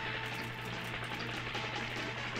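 A steady crackling hiss with a low hum underneath, from the film's soundtrack.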